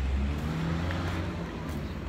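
Low, steady rumble of road traffic or a nearby idling vehicle.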